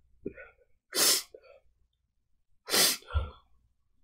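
A crying woman blowing her nose into a tissue: two short, loud nasal blasts about two seconds apart, with small sobbing sounds around them.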